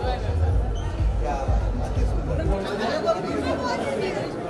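Indistinct chatter of several voices over music with a heavy bass, which drops out a little past halfway.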